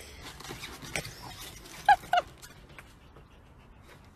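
A small dog giving two short, high yips in quick succession about halfway through, with a few light clicks and scrapes around them.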